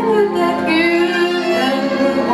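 A woman singing into a microphone with a band of violins, double bass, cimbalom and clarinet accompanying her.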